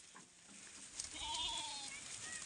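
A sheep in the flock bleats once, a single call of just under a second starting about a second in, over faint rustling of browsing.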